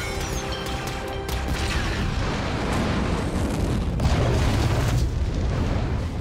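Film action soundtrack: a musical score, then sharp hits and a long, loud explosion. The explosion builds from about a second in, with a deep low end, and is loudest near the end.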